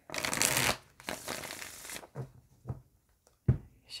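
A deck of oracle cards being riffle-shuffled by hand: two long riffles in the first two seconds, then a few light taps as the deck is squared, with one sharp knock about three and a half seconds in.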